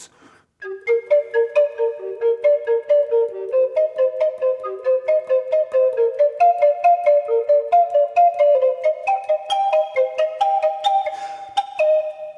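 Native American flute in G minor playing a quick run of short, detached, double-tongued notes in three-note chord patterns, climbing gradually higher in pitch. The notes begin after a brief pause about a second in.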